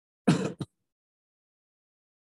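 A man clearing his throat once, a short two-part sound just after the start.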